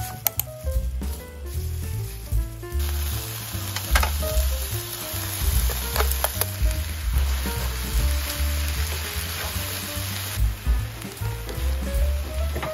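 Marinated sliced beef sizzling in a hot nonstick frying pan. The hiss starts about three seconds in, as the meat goes into the pan, and dies down near the end, with a few sharp clicks of food or utensils against the pan. Background music plays underneath.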